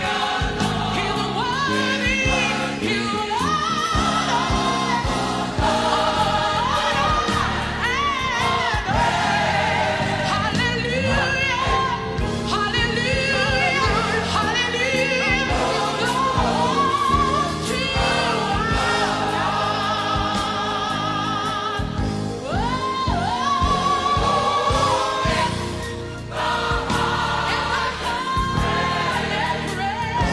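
Gospel choir song: a woman soloist sings a lead line with sliding, ornamented runs over the full choir, backed by a band with a steady beat.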